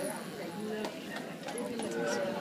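Indistinct voices of a small group talking, with several light clicks or taps in the second half.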